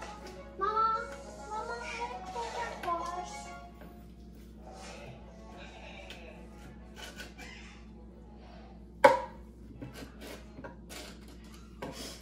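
Quiet handling of a marinade injector in a container of thick herb paste, with small ticks of plastic and one sharp knock about nine seconds in. In the first few seconds a voice or music sounds over it.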